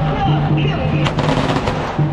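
A string of firecrackers crackling in a rapid run for about a second, starting halfway through, over procession music with a steady low beat.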